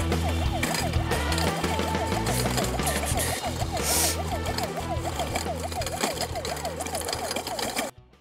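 Electronic toy siren on a battery rotating beacon light, switched on and yelping up and down in pitch about three times a second, over background music; it cuts off suddenly near the end.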